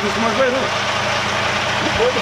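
Heavy diesel truck engine idling steadily, with voices talking over it near the start.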